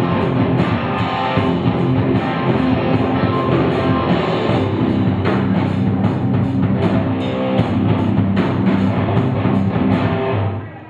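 Live rock band playing an instrumental passage: electric guitars and drum kit, with no singing.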